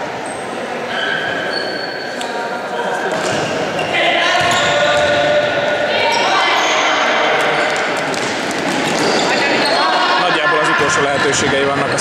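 A futsal ball being kicked and bouncing on a sports-hall floor, the impacts echoing in the large hall, with players calling out to each other.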